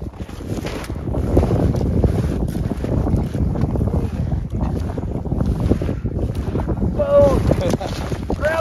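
Wind buffeting the microphone over the steps of traditional snowshoes through deep snow. Near the end a person's voice is heard briefly.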